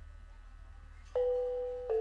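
Electronic keyboard playing ringing, bell-like mallet notes in a gamelan-style melody: the first note comes in sharply about a second in and a second, slightly lower one follows. A faint low hum is heard before the first note.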